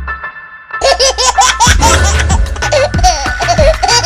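Music dies down, then about a second in a burst of high-pitched laughter starts, in repeated rising and falling peals over the music.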